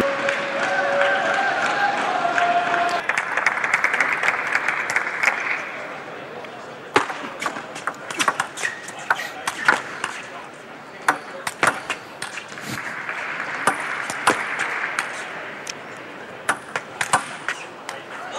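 Arena audience applauding for several seconds. Then come sharp clicks of a table tennis ball striking the table and bats during serve and rally, with a second swell of crowd noise partway through the rally.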